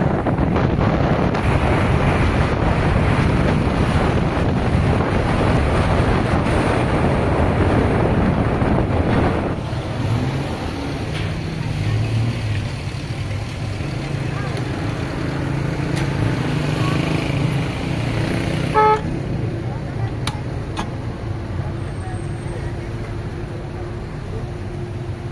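Steady wind and road noise from a moving vehicle for about the first ten seconds, then quieter town street sound with voices and traffic, broken by one short car horn toot about three quarters of the way through.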